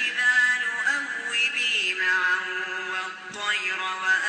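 A man reciting the Quran in the drawn-out, melodic tajweed style, holding long notes that waver and glide in pitch. There is a short breath break a little after three seconds.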